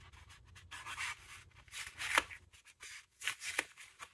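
A small piece of melamine foam cleaning sponge being worked by hand: a few faint, short, scratchy rasps, roughly one a second.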